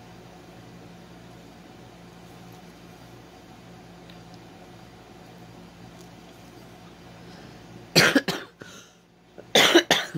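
A woman coughing: two loud short coughs about a second and a half apart, near the end, over a low steady background hum.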